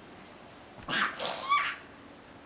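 A toddler's voice: a short breathy burst followed by a brief high-pitched squeal, about a second in.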